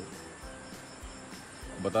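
Insects chirring steadily as a thin, high background drone, with a voice starting just at the end.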